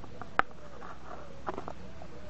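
Plastic side cover of a Stihl chainsaw being set onto the saw by hand: one sharp click about half a second in, then a few lighter taps near the end.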